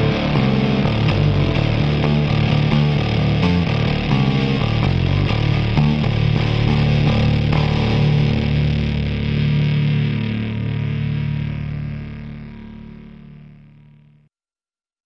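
Rock band's distorted electric guitars, bass and drums playing the last bars of a song, ending on a final chord left to ring. The sound fades away over the last few seconds.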